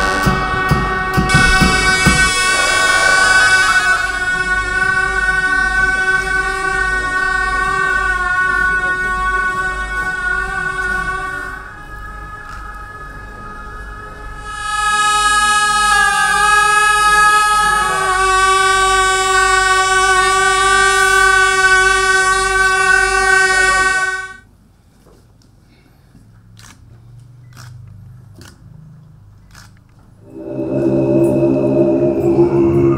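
Tibetan gyaling (double-reed ceremonial horns) sounding long, loud held notes with a bend in pitch, over a steady low pulse. They drop away briefly about twelve seconds in, come back, and stop about twenty-four seconds in, leaving only faint clicks.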